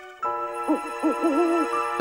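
Cartoon owl hoot sound effect: a wavering call that rises and falls several times, over a held music chord that comes in just after a brief silence.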